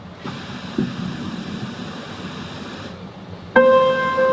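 A steady rushing background noise, then about three and a half seconds in a keyboard starts playing a held chord, louder than anything before it: the opening of the church music.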